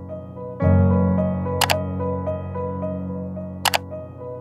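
Gentle piano background music, a fuller chord coming in about half a second in, with two sharp double clicks, one about a second and a half in and one near the end.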